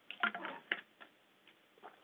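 A quick run of small clicks and knocks in the first second, then a few fainter single clicks, over faint background hiss.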